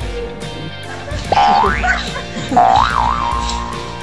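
Background music with a steady beat, overlaid with pitched springy glides: one rising sharply about a second in, then a wobbling up-and-down tone in the middle.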